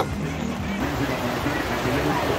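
Heavy rain pouring down on tarp awnings overhead, a steady rushing hiss, with a faint murmur of voices underneath.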